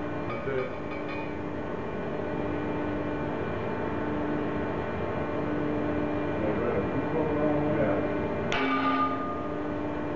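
Tensile testing machine running with a steady, pitched mechanical hum after a pull test. A single sharp metallic click about eight and a half seconds in.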